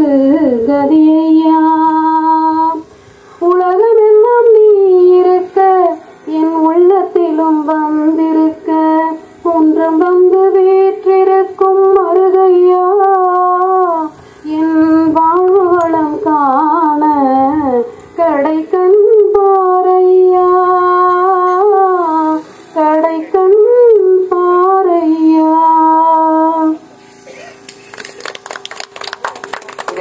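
A woman singing a Tamil devotional song solo through a microphone, with long held notes and sliding ornaments between them. She stops near the end, and a patter of faint clicks follows.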